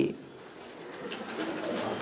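A faint, low cooing bird call over quiet room tone.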